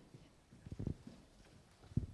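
Footsteps: a few dull knocks close together a little under a second in, over quiet room noise.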